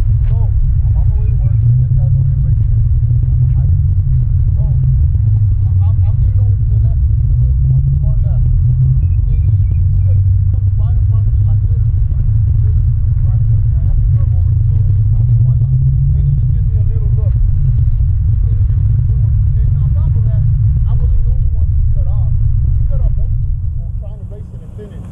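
Sport motorcycle's engine idling as a steady low rumble, with faint voices talking in the background. Near the end the rumble drops away suddenly as the engine is switched off.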